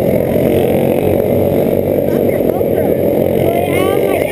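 Racing kart engines running steadily, a continuous mechanical drone. Voices come in near the end.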